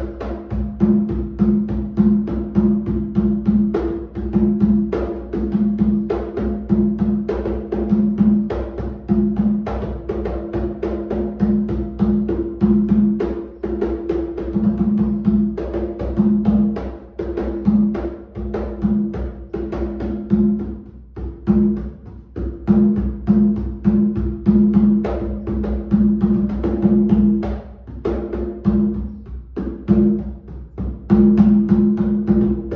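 Atabaque lé, a traditional 80 cm wooden hand drum with a goat-skin head, played with bare hands in a quick, steady run of strokes. The head rings at a steady low pitch under the slaps.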